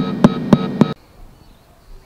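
Homebrew LM386 audio amplifier oscillating through its loudspeaker: a loud, steady buzzing tone with sharp clicks about four times a second, cutting off suddenly about a second in. The oscillation is the sign of the amplifier's instability when the volume is turned up.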